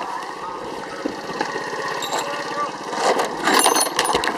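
A small petrol engine running, its firing a rapid, steady buzz, with a clatter of knocks near the end.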